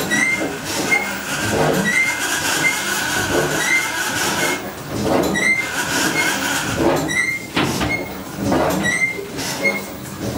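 Sisson-built steam engine of the tug Mayflower running, a rhythmic mechanical clatter with short high squeaks repeating all through. A steady hiss joins in over the first couple of seconds and again about five seconds in.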